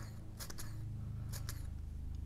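Plastic Mityvac hand pump brake bleeder being worked: two pairs of short clicks about a second apart as the trigger is squeezed and released, building up about 10 pounds on its gauge before the bleeder valve is opened. A steady low hum runs underneath.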